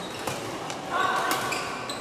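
Badminton rackets hitting shuttlecocks in a large sports hall, with several sharp hits and short squeaks from shoes on the court floor. A brief loud call rings out about a second in and is the loudest sound.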